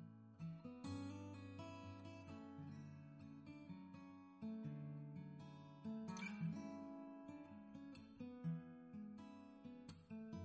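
Background music: acoustic guitar, picked and strummed, in a gentle sequence of notes.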